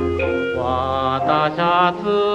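A 1930s Japanese ryūkōka record playing: from about half a second in, a singer holds long notes with vibrato over the band accompaniment. The sound is narrow and dull, with no top end, as in a transfer from an old record.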